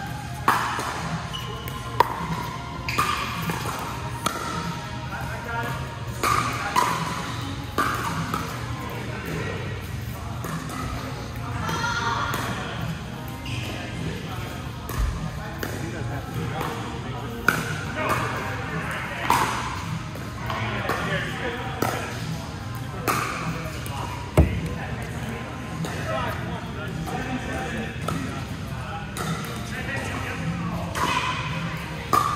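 Pickleball paddles striking a plastic ball in a doubles rally, with the ball bouncing on the court: sharp pops at irregular intervals, each with a short ringing echo in a large hall.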